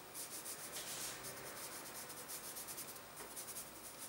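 Fingertips rubbing grated white pastel dust across black cardstock: a faint, soft brushing of skin on paper in quick repeated strokes.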